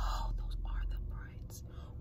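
A woman whispering under her breath, over a low steady rumble.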